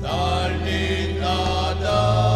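A church hymn sung to a held instrumental accompaniment. The sung notes slide into new pitches, and a low sustained bass note changes near the end.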